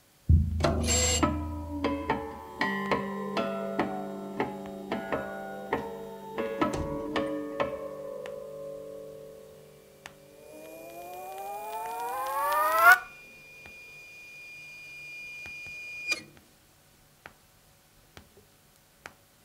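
Experimental turntable music: a string of sharp attacks, each leaving a ringing tone, builds up into a held chord. The chord glides upward in pitch and cuts off abruptly about 13 seconds in, leaving one high steady beep that stops about three seconds later.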